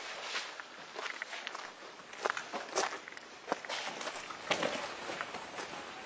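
Slow footsteps on outdoor ground: a series of soft, irregularly spaced steps.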